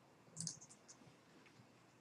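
Computer mouse clicks over near silence: one sharp click about half a second in, followed by a few softer clicks.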